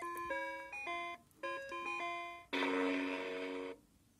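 Oregon Scientific Star Wars Clone Wars learning laptop toy playing an electronic beeping jingle through its small built-in speaker: two quick phrases of short stepped notes, then one long buzzy held note that cuts off near the end.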